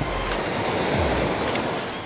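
Steady rush of surf washing over a sandy shore.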